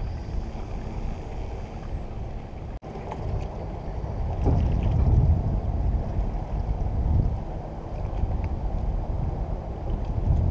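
Water sloshing around a float tube, with wind rumbling on the microphone; the low wash swells louder a few times.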